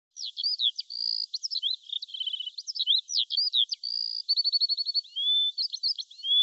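Birdsong: a quick, continuous run of varied chirps, short whistles and trills, including fast trills of evenly spaced notes about two and four seconds in.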